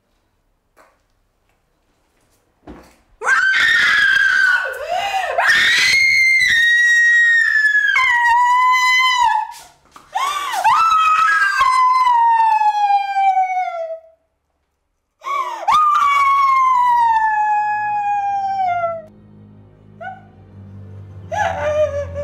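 A woman screaming in distress: three long, loud, high-pitched screams, each falling in pitch, then a short cry near the end. A low music drone comes in under the last scream.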